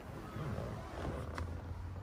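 Low, steady hum of the boat's machinery running, with a faint click about one and a half seconds in.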